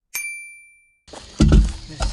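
A single bright chime sound effect: it strikes once, rings for about a second and then cuts off. It is followed by a low rumbling thump about a second and a half in.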